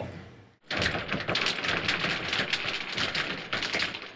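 Dense, rapid crackling that starts abruptly about half a second in and runs on fairly evenly, a fast run of sharp clicks.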